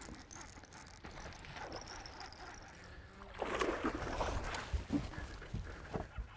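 Water splashing for a second or two past the middle as a hooked largemouth bass is played to the side of the boat, with a couple of light knocks near the end.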